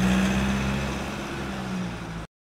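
Wooden toy dump truck with notched plywood wheels rolling across a table under a load of marbles: a steady low hum and rumble with a light rattle on top, easing slightly as it rolls away.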